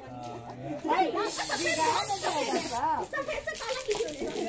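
An aerosol colour-spray can hissing in one burst of about a second and a half, starting just over a second in and cutting off sharply, over several people's voices.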